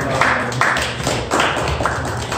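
A small group clapping after a talk ends, the claps coming in quick, uneven bursts.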